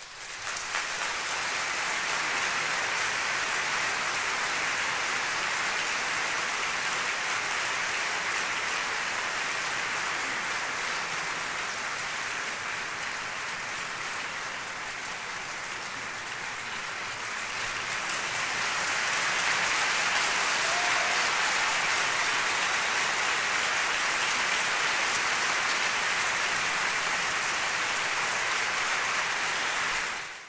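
Audience applauding in a concert hall. The clapping starts abruptly, eases a little, then swells again about two-thirds of the way through and holds steady.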